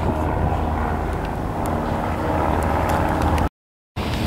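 A steady engine drone with outdoor show ambience, broken by about half a second of dead silence near the end.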